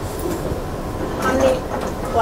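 Steady low rumbling room noise with faint, indistinct voices.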